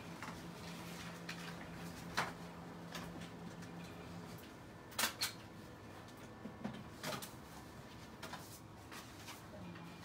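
Quiet room with a steady low hum that stops about four seconds in, and scattered small clicks and knocks, the loudest a quick pair about five seconds in.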